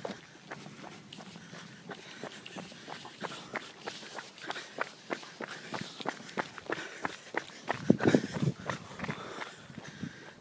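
Brisk footsteps on asphalt, about two to three steps a second, from a person walking behind a tracking dog on a long line. A brief louder, lower rustle sounds about eight seconds in.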